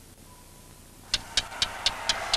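Faint hiss, then about a second in a rapid, even ticking starts, about four ticks a second, over a low rumble.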